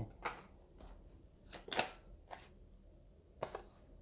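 Faint, scattered short clicks and taps, about six in all, the clearest a little before the middle, over a quiet room hum.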